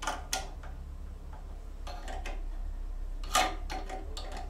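Metal hand tool clicking against the nuts and studs on the terminal board of an old transformer battery charger as they are undone: a few sharp metallic clicks, roughly in pairs, the loudest about three and a half seconds in.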